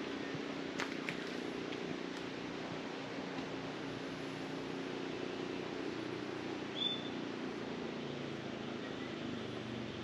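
A steady low hum made of several held pitches, with a few faint clicks in the first couple of seconds and one short high chirp about seven seconds in.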